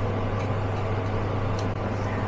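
Sichuan peppercorns frying gently in a little oil over low heat in a nonstick pan, a faint even sizzle under a steady low hum, with a couple of faint ticks as a wooden spatula stirs them.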